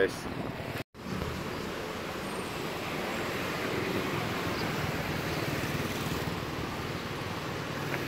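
Street traffic: a steady hum of vehicle engines and road noise, broken by a brief dropout about a second in.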